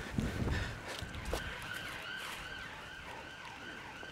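Emergency-vehicle siren sounding in a fast rise-and-fall, about three to four sweeps a second, coming in about a second in. A brief low rumble of movement at the start.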